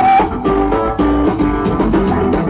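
Live band playing rock music: strummed acoustic and electric guitars over drums and bass, one note held at the start before the chords move on.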